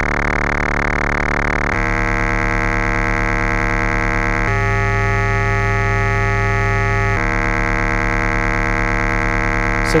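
Doepfer A111-1 VCO's sine wave under audio-rate exponential FM from a second sine oscillator (an A110 VCO), giving a steady, harsh, inharmonic tone. Its timbre jumps three times, about two, four and a half and seven seconds in, as the modulating oscillator's range is switched between octaves.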